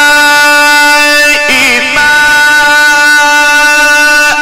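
A male Quran reciter in the Egyptian mujawwad style holds one long, steady note. The note breaks briefly about a second and a half in, then resumes at the same pitch.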